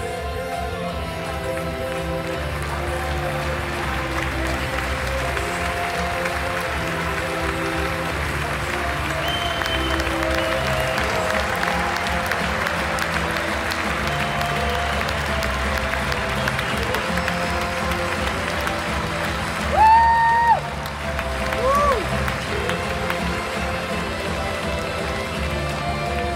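Arena audience applauding steadily over music played on the PA. About twenty seconds in there is a loud whoop from the crowd, then a shorter one.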